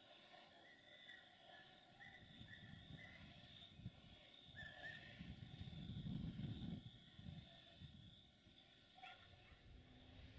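Faint outdoor ambience: small birds chirping now and then, over a low rumble that swells about six seconds in and then fades.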